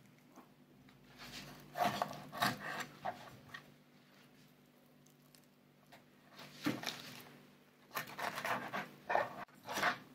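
A filleting knife cutting along a sea bream's backbone to free the second fillet: quiet, short scraping strokes in two bursts, one about a second in and another from about six and a half seconds.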